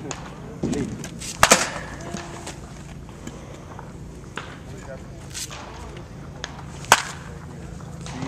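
A wooden baseball bat cracking against pitched balls, twice, about five and a half seconds apart: sharp, loud cracks. Fainter knocks fall between them.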